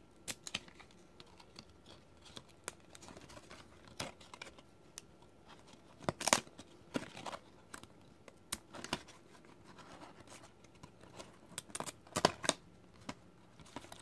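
Football trading cards being handled and slid past one another: soft scattered clicks and rustles of card stock, with louder scrapes about six and twelve seconds in.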